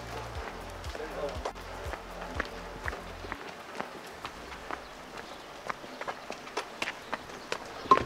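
Footsteps of several people walking on wet stone cobbles, a run of sharp steps a few each second. A music track's low bass beat runs underneath and stops about three seconds in.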